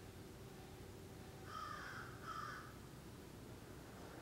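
A bird calling twice, two short calls of about half a second each, over faint steady room hiss.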